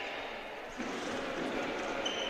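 Faint ambience of an indoor floorball game in a sports hall, a low murmur of the hall that fills out slightly about a second in.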